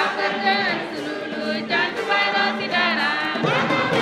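Choir singing a Catholic hymn in Ngambaye, the voices sliding between notes. Near the end, lower, fuller voices join and the sound thickens.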